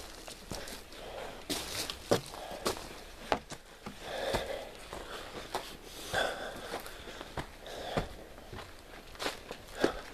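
A person's footsteps as he walks and climbs up onto a wooden deck, irregular steps about one or two a second.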